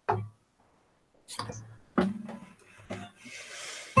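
An acoustic guitar being handled and lightly plucked: three separate short notes or knocks about a second apart, with a faint hiss near the end.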